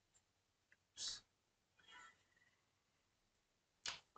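Near silence: room tone, broken by a faint brief noise about a second in and a fainter one near two seconds.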